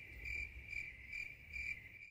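Cricket-chirping sound effect: a steady high trill pulsing a few times a second over a faint low hum. It starts and cuts off abruptly with the edit.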